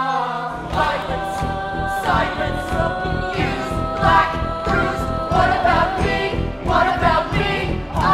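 A musical-theatre ensemble singing in chorus over a backing band. Held sung notes open, then a driving beat comes in about half a second in and the voices carry on in short phrases over it.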